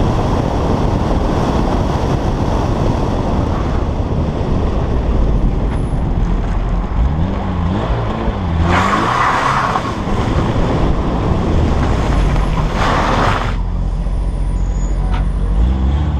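Peugeot 309 GTI rally car's four-cylinder engine heard from a door-mounted camera as the car comes off the dirt track and slows: revs rise and fall through the middle, with two short bursts of hiss, then the engine settles low as the car pulls up.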